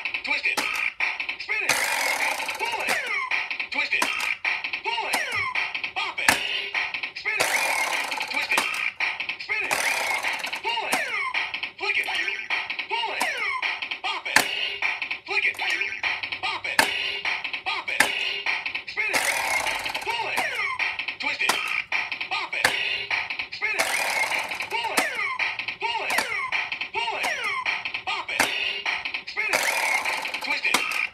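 Bop It Extreme toy playing its electronic game: a steady ticking beat with gliding electronic sound effects and a recorded voice calling out commands, plus short bursts of noise every few seconds as actions are made.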